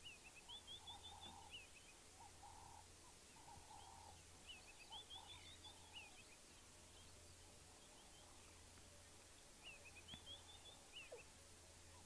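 Faint birds calling over near silence: three short runs of quick high chirps, with lower short notes between them.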